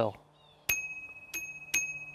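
Small handlebar bell on a Scott Axis eRide 20 e-bike rung three times, each ding ringing on, the last left to fade out.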